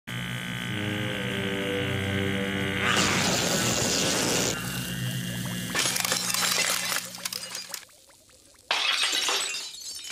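Cartoon sound effects over music: a long electric zap about three seconds in, then a run of sharp cracking and a shattering crash near the end as a body cast breaks apart.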